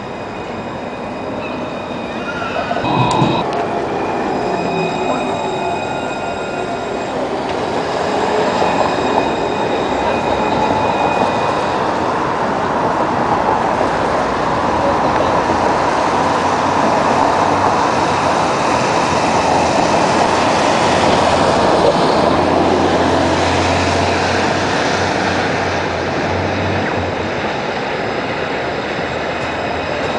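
Luas light-rail trams running on street track and passing close by: a steady rumble of wheels on rail that grows louder through the second half. Thin high tones hold for several seconds early on, a sharp click comes about three seconds in, and a low hum sounds for a few seconds past the middle as a tram draws near.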